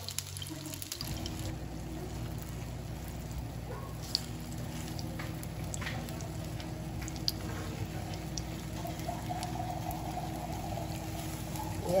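Slices of egg-coated tikoy (sticky rice cake) sizzling in oil in a frying pan, with scattered small pops and crackles. A steady low hum comes in about a second in.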